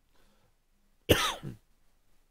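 A person coughs once, sharply, about a second in.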